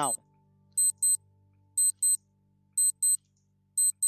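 Countdown clock sound effect: a crisp, high-pitched tick-tock, one pair of ticks each second, four times over.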